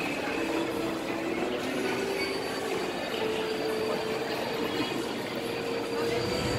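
Carousel in motion: a steady rolling, rumbling ride noise with long held tones that step slowly up and down in pitch.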